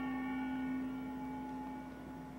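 A small hand-held gong ringing out after being struck, several metallic tones fading slowly, the low tone lasting longest.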